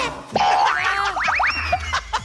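Cartoon-style comedy sound effects: a boing, then three quick upward whistle sweeps about a second in, the last held as a high tone sliding slowly down.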